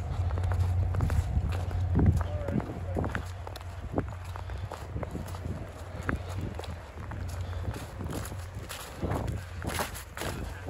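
Footsteps on a snow-dusted path of dry leaves, about two steps a second. A steady low hum sits underneath and fades after the first few seconds.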